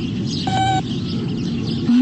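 A cartoon robot's short electronic beep, one steady tone about half a second in, over a background of birds chirping.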